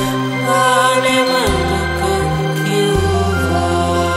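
Sinhala Buddhist devotional song (a Wesak song): singing over an instrumental backing with long held bass notes.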